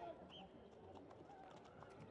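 Faint, distant voices of rugby players and spectators on the field, with a short high chirp about a third of a second in.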